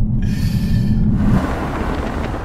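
Kia Stinger GT1's 3.3-litre V6 running under way, a steady low rumble with a rush of wind and tyre noise in the first second.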